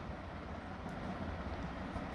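Steady low background hum with an even hiss: room tone, with no distinct events.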